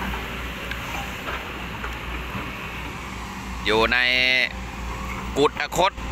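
Hydraulic excavator diesel engines running at work, a steady low drone. A man's voice speaks briefly about four seconds in and again near the end.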